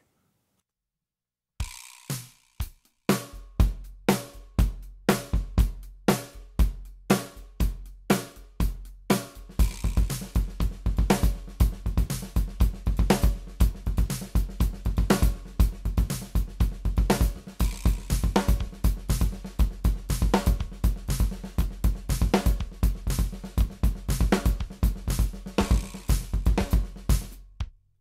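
Drum kit played in a linear practice pattern built from paradiddle-diddles, double paradiddles and paradiddles, spread between snare, cymbals and bass drum. It starts after a second and a half of silence, with sparse strokes at first, then becomes a steady, dense pattern from about ten seconds in and stops just before the end.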